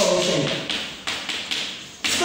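Chalk tapping and scraping on a blackboard as a word is written, with several sharp taps around the middle.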